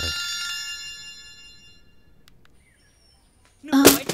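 A single struck bell-like metallic chime whose many ringing tones fade away over about two and a half seconds. A short loud sound comes near the end.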